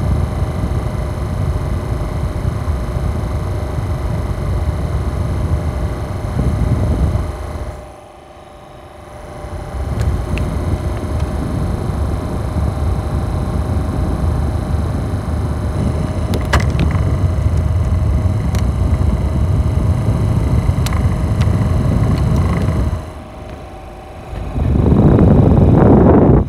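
Small USB mini air cooler fan running with a steady whir and a faint motor hum. The sound drops away briefly at about eight seconds and again near the end, then picks back up.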